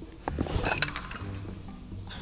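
Teacups and saucers clinking, with several sharp clinks in the first second, over background music.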